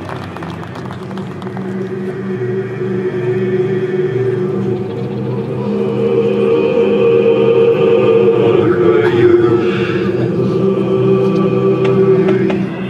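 Marching band music: a sustained chord held and swelling steadily louder, with a brighter upper layer joining about halfway through.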